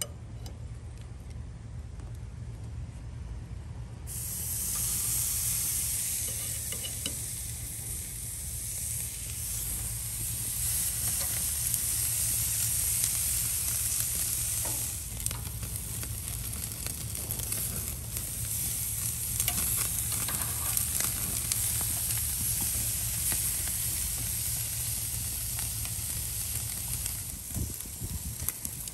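Ribeye steaks sizzling on hot grill grates as they sear. The sizzle starts sharply about four seconds in and carries on steadily with small crackles, over a low steady rumble.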